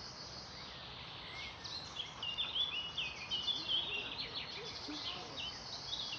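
Birds singing: quick runs of short chirping notes that start about a second and a half in, over a steady hiss of outdoor background noise.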